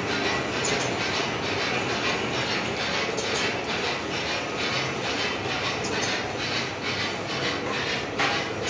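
Electric motor-driven three-roll pipe bending machine running empty, its drive chain and roller gears clattering steadily with a repeating rattle about twice a second.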